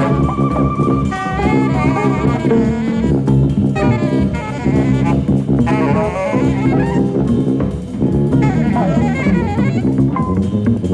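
Live jazz quintet of alto saxophone, tuba, guitar, cello and drums playing. The alto saxophone carries a wavering melodic lead over steady drum-kit playing and a low bass line.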